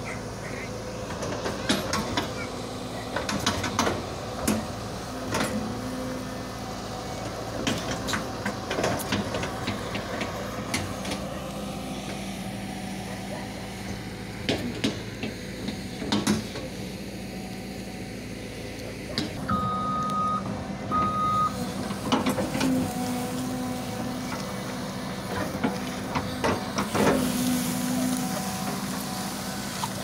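Caterpillar 313D2 hydraulic excavator's diesel engine running steadily under work, with repeated knocks and clanks of the bucket digging soil and plant debris. Two short high beeps sound about two-thirds of the way through.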